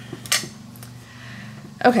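A single sharp clack of a plastic palette knife being set down on the work surface, over a faint steady background hum.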